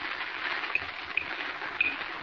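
Steady hiss of an old 1940 radio transcription recording in a pause between lines, with a few faint, short high ticks scattered through it.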